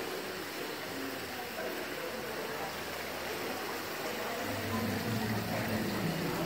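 Water of a tiered fountain splashing steadily into its basin, an even hiss of falling water, with a low voice talking faintly over it in the second half.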